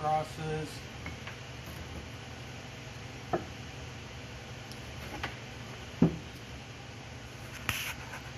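Workshop room tone: a steady low hum, broken by a few light knocks and clicks as things are handled on the workbench. A brief voice is heard at the very start.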